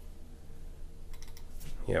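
A few computer keyboard keystrokes, light clicks bunched about a second in.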